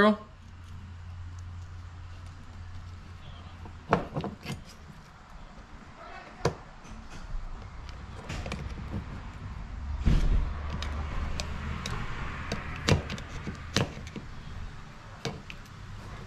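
Scattered small clicks and taps of a screwdriver and the plastic and metal parts of a motorcycle handlebar switch housing as the brake and turn-signal switches are fitted into it, over a steady low hum.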